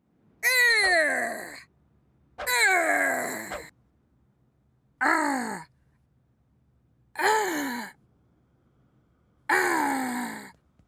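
Cartoon character voice of the pirate letter R growling its letter sound, a pirate-style "rrr", five times, each call about a second long and falling in pitch.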